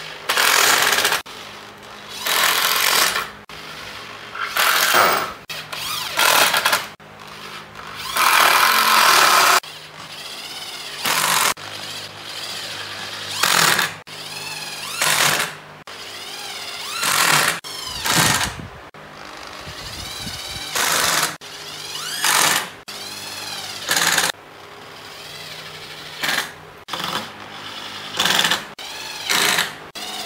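Corded electric drill driving screws into pine pallet wood, run in many short bursts about a second long with brief pauses between. In some bursts the motor's whine rises and falls as it speeds up and slows.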